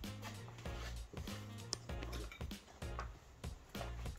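Soft background music playing quietly under a pause in the talk.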